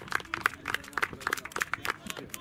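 Spectators clapping to cheer a goal: a quick, irregular run of hand claps.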